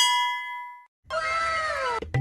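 A bell-like notification ding from a subscribe-button animation, ringing out and fading away within the first second. About a second in, a drawn-out cry with a falling pitch follows over a light hiss.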